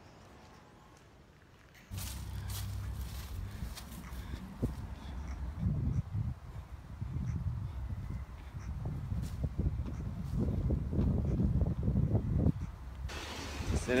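Wind buffeting and handling noise on a handheld phone microphone while walking, a low uneven rumble with scattered knocks that starts suddenly about two seconds in.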